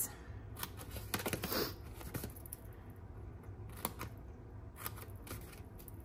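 Small paper snips cutting short slits into cardstock along its score lines: several quiet, separate snips at irregular intervals, with some paper rustle.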